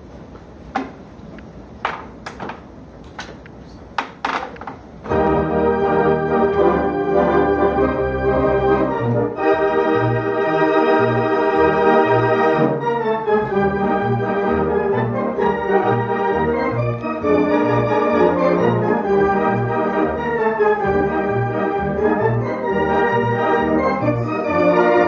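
Home theatre organ: a few sharp clicks, then about five seconds in, a march starts on full sustained chords. From about nine seconds on, a steady march beat runs in the pedal bass.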